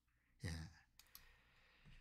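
Near silence, broken about half a second in by one brief, faint sound from a man's voice, and a tiny click a little after a second.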